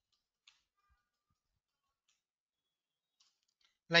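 A few faint computer-keyboard key clicks over near silence while text is typed into a cell, the clearest about half a second in and a few fainter ones later.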